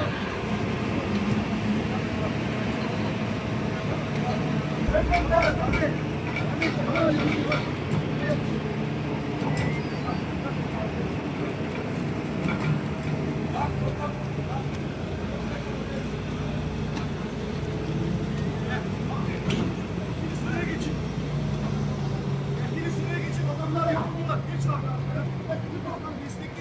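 An engine running steadily, with people's voices and calls over it.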